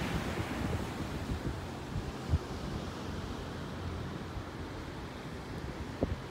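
Wind buffeting the microphone over a steady wash of ocean surf, with one brief thump a little over two seconds in.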